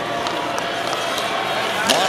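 Ice hockey arena crowd noise, steady, with a few sharp clacks of sticks and puck on the ice. The loudest clack comes just before the end.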